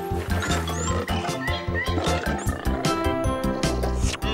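Instrumental cartoon music with a steady beat. A cartoon lion roar sound effect is laid over it in the first second or two.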